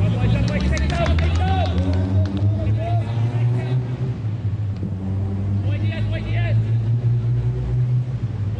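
Shouts and calls of players on a soccer pitch, a few sharp knocks among them early on, over a steady low hum.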